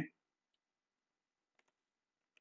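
Near silence with a few faint computer keyboard keystrokes: one about half a second in, then a quick pair about a second and a half in.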